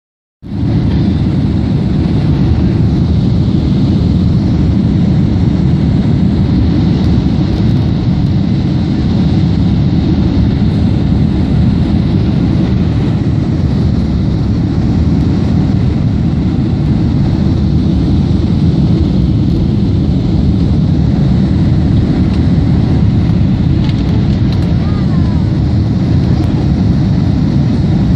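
Steady low roar of a jet airliner heard inside the cabin from a seat over the wing during the landing approach, with the flaps extended: engine and airflow noise.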